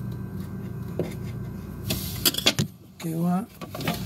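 Steady low hum of the running refrigerator, its fan on. About two seconds in come a few light clicks of handling, and a short murmured vocal sound follows near the end.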